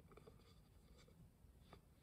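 Faint rustling and a few soft ticks of a picture card being laid down and pressed flat on the floor by hand.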